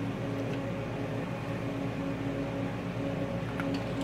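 Steady electrical hum of running equipment with a constant low tone, and a faint click near the end.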